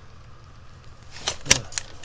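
A few sharp plastic clicks from a handheld digital tachometer being handled and its button pressed, the loudest about one and a half seconds in, over a low steady hum.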